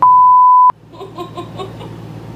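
A loud, steady, high censor bleep lasting under a second, laid over a muted stretch of speech and cut off with a click. Laughter follows.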